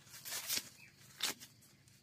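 Dry corn husks being torn and peeled back from a ripe ear of corn by gloved hands: two short, crackling rips, about half a second and a second and a quarter in.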